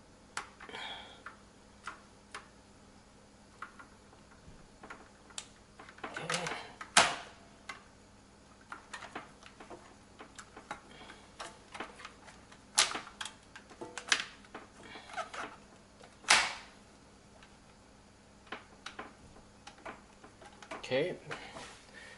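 Plastic clicks and knocks of push-fit connectors and tubing being refitted onto a reverse osmosis water filter: irregular sharp clicks, the loudest about seven, thirteen and sixteen seconds in.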